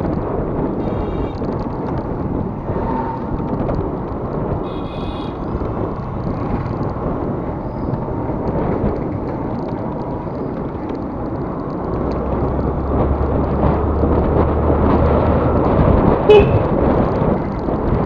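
Wind rushing over the microphone of a scooter-mounted action camera, with the small scooter engine running underneath as it rides along. A vehicle horn toots briefly twice in the first few seconds, and a sharp knock comes near the end.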